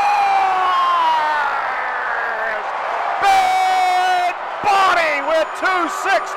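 A hockey play-by-play announcer draws out a long goal call that slowly falls in pitch, over an arena crowd cheering the goal. A second held note comes about three seconds in.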